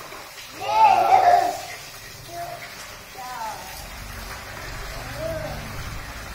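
A young child's high-pitched vocalising, one loud rising and falling exclamation about a second in, then a few shorter calls, over the rustle of a cardboard toy box being handled.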